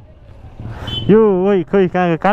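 Low street-traffic rumble, then a person talking loudly from about a second in.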